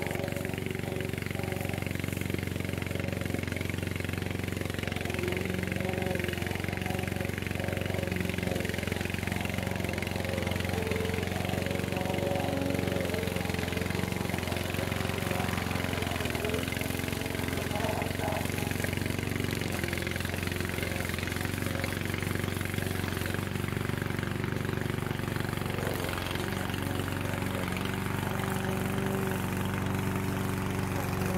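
Engine of a Vigorun VTC550-90 remote-control tracked lawn mower running steadily under load as it cuts through long, rough grass.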